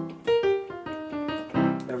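Yamaha Piaggero NP-V80 digital keyboard playing its sampled grand piano voice: a quick string of single notes, then a fuller chord near the end.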